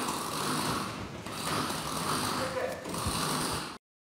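Raspy, breathy hissing drawn out in a few long pulls that swell and dip. It cuts off suddenly near the end.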